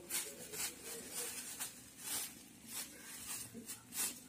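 Thin plastic bag crinkling and rustling in short, irregular crackles, about two a second, as kittens paw and tumble on it.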